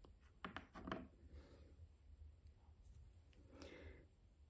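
Near silence with faint handling noise: a few soft clicks in the first second, then light rustles of thread and fabric being handled for needle lace.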